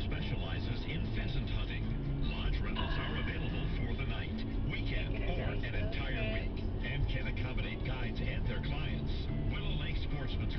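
Muffled radio talk and music playing inside a moving car, over steady road and engine rumble.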